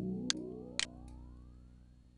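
A synthesizer bass note from a 'Bass Sweep' track held and fading steadily, its overtones gliding upward in a rising filter sweep, played through a channel EQ whose lowest band is being boosted. Two short high ticks sound in the first second.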